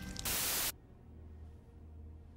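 A short burst of hissing static, about half a second long, that cuts off suddenly and leaves only a faint low hum.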